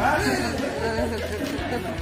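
Several people's voices talking at once in a room: unclear chatter with no single clear speaker.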